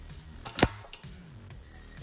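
A single sharp metal click from a hand wrench against a bolt on a steel wall-mounted rack, about half a second in.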